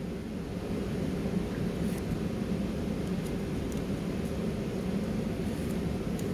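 Steady low rumble of a room's ventilation or air-conditioning, with a few faint clicks of paper and tape being handled as straw pieces are pressed down.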